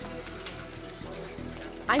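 Hot oil in a deep fryer sizzling and dripping as a basket of fried chicken livers is lifted out, under a steady background music bed.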